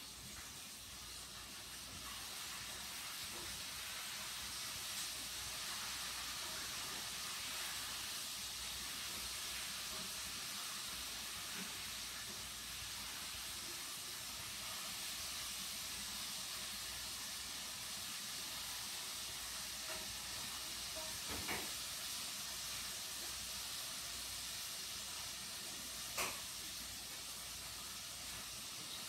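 A faint, steady hiss, with two faint clicks near the end.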